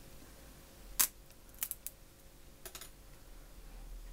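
A few light clicks and taps from a wooden skewer being handled against the felt and foam: one sharp click about a second in, then a few softer ticks.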